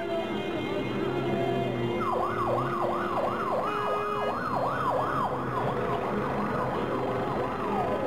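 Electronic vehicle siren yelping, rising and falling about twice a second from about two seconds in, over steady street traffic noise.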